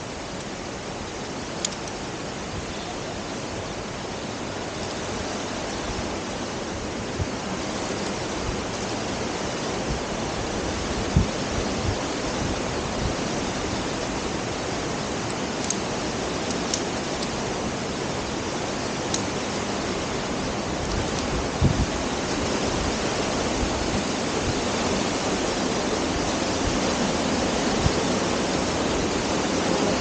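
Steady rushing of a waterfall, growing gradually louder, with a few small clicks and knocks over it.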